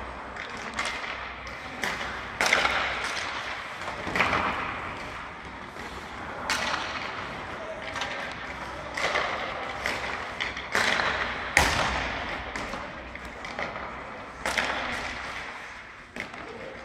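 Hockey pucks being struck by sticks and cracking against the boards and goal, about seven sharp hits spaced a second or two apart, each echoing through the ice arena.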